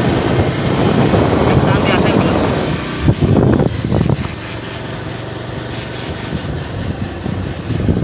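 Wind rushing over the microphone of a moving motorcycle, over a low engine hum. The rush is strongest for the first three seconds, then eases, with a couple of brief louder gusts about three and four seconds in.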